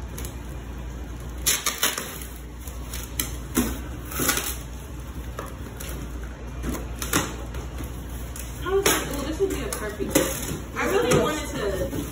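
Cardboard shipping carton being pulled open and unpacked by hand, with scattered sharp rips, flaps and knocks of the cardboard. Low voices join in near the end.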